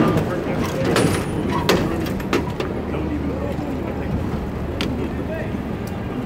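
Cable car being pushed around by hand on a wooden turntable: a steady low rumble broken by several sharp clanks and knocks.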